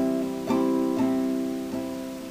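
Acoustic guitar strummed: a chord stroked roughly every half second, each ringing and fading before the next.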